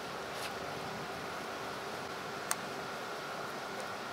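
Low steady background hiss with a faint hum and one sharp click about halfway through.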